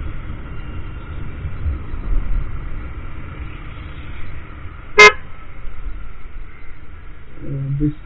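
Low, steady rumble of a Honda Grazia 125 scooter being ridden along a road, with a single short, very loud horn toot about five seconds in.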